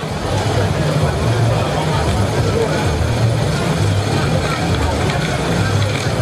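Crowd noise: many voices at once in a steady, dense din with a low rumble underneath and no single voice standing out.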